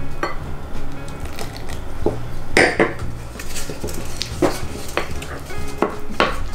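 Wooden spatula stirring thick pancake batter in a glass mixing bowl, with scraping and occasional knocks against the glass.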